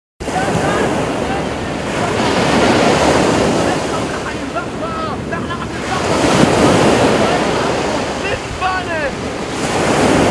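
Ocean surf breaking on a beach, swelling loudly twice, with wind buffeting the microphone.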